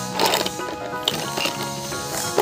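Background music with held, sustained notes, and a brief noise about a quarter of a second in.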